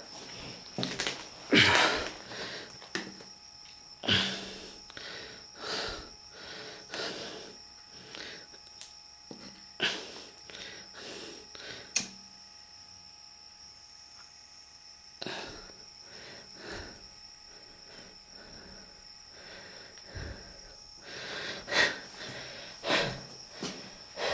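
Irregular scuffs and crunches of footsteps on dirt and loose rubble, mixed with rustling from handling the hand-held camera, most frequent at the start and near the end. A steady high-pitched whine runs underneath.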